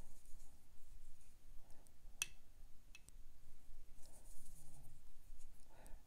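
Faint handling sounds of a watercolour brush working paint in a plastic palette, with a sharp click about two seconds in and a fainter click about a second later.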